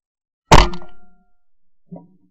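A single 12-bore shotgun shot from a Beretta 682 over-and-under, recorded right on the gun: one very loud, sharp report about half a second in that rings briefly as it dies away. A much fainter knock follows near the end.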